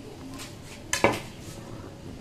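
Fingers working dry flour in a mixing bowl, with one sharp clink against the bowl just after a second in.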